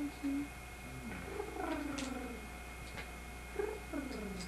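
Baby raccoons vocalizing: a few short chirps, then a longer whimpering call that falls in pitch, and another falling call near the end, with a couple of light clicks.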